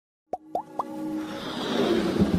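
Logo-intro sound effects: three quick plops rising in pitch, about a quarter second apart, then a swelling whoosh over a steady music tone.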